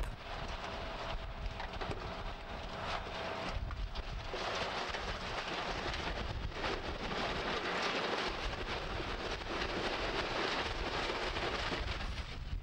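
Soil and rock pouring out of a tipped dump truck body: a steady rushing rattle of sliding dirt and stones, a little louder after about four seconds, with the truck's engine running low underneath.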